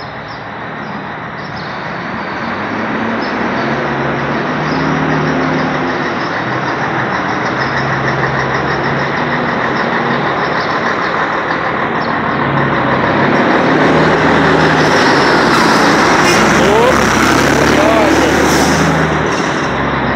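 Heavy diesel trucks running close by, the sound building steadily and loudest near the end as a semi-trailer rolls past on its tyres.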